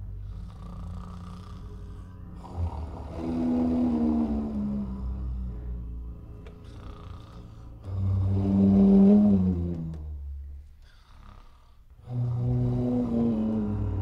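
Didgeridoo and contrabass flute improvising together: a low didgeridoo drone runs under three loud swells of tones that slide downward in pitch. Just before the last swell the sound falls almost silent for about a second.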